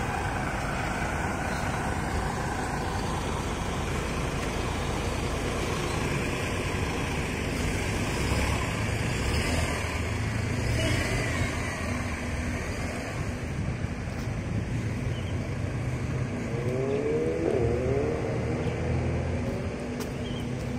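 Road traffic passing: a steady rumble of car engines and tyres, with a brief rising and falling whine near the end.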